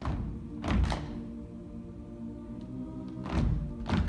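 A cappella choir holding low sustained chords, cut by heavy percussive thumps: two close together about a second in and two more near the end.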